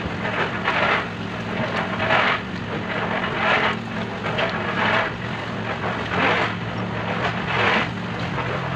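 A small engine running steadily during a concrete slab pour, under irregular gritty rushes of wet concrete being shovelled and dumped, roughly one every second.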